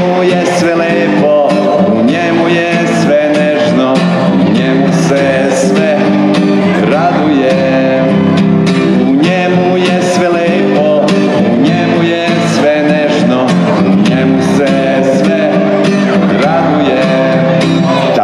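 A man singing a song while strumming an acoustic guitar in a steady rhythm.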